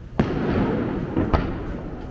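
Aerial firework shells bursting overhead: a loud bang just after the start that trails off in a long rolling echo, then a second sharp bang about a second later.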